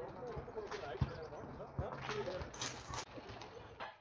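A basketball thudding a few times at uneven intervals on an outdoor asphalt court, with faint indistinct voices underneath.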